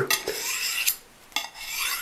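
Knife blade stroked along a ceramic honing rod, two scraping passes about a second apart, each starting sharply, polishing the knife's edge after diamond sharpening.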